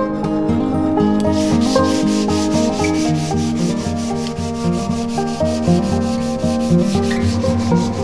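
Sandpaper rubbed by hand along a wooden tomahawk handle in quick, even back-and-forth strokes, starting about a second in. Plucked-string background music plays over it.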